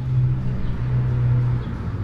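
Steady low hum with a rumble underneath: background noise of a city street with traffic. The hum dips briefly about two-thirds of a second in.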